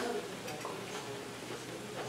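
Quiet stretch with faint chewing of a mouthful of food, close to a clip-on microphone.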